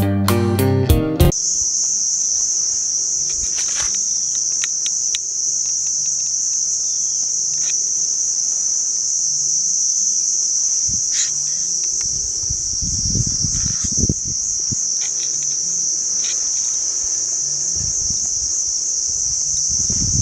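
Steady insect chorus, a loud continuous high-pitched drone, after a short guitar music intro that cuts off about a second in. A few low rumbles come and go in the background.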